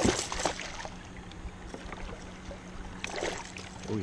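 A hooked largemouth bass thrashing and splashing at the surface beside a kayak as it is brought in. The loudest splash comes right at the start and another about three seconds in, with smaller splashes between, over a steady low hum.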